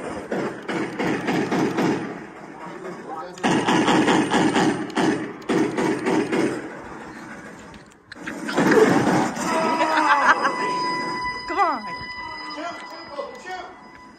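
Indistinct voices of players shouting and talking over one another, in several loud bursts. A steady electronic tone comes in about ten seconds in and holds to the end.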